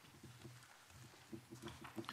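Near silence: room tone with faint, low off-microphone voices, a little more noticeable in the second half.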